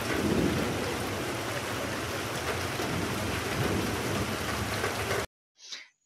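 Steady heavy rain with a rumble of thunder near the start, cutting off suddenly about five seconds in.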